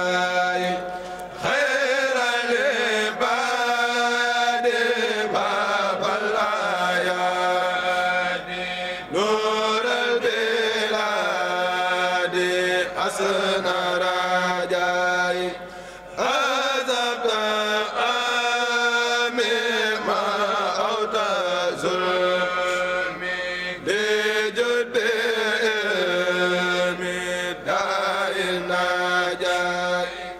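A group of men chanting a Mouride khassida in unison, unaccompanied, in long sung phrases broken by brief pauses about every seven seconds.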